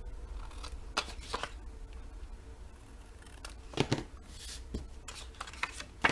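Hand scissors snipping the corners off black cardstock flaps: a few short sharp snips spread through, with the card handled between cuts.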